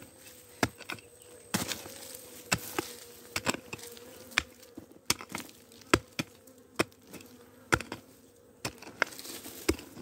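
A hand digging tool striking and scraping into dry, stony soil in irregular sharp strikes, one or two a second. Honeybees buzzing steadily and faintly close by.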